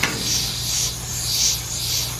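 Small metal air valve being twisted by hand into a threaded hole in a PVC air-supply pipe. Air hisses out of the leaking hole and the threads rub, in about four short surges, one with each turn.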